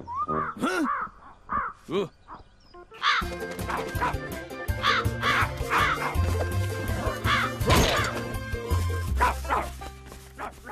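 A crow cawing over and over on top of background music, from about three seconds in until near the end. It is preceded by a man's short wordless vocal sounds.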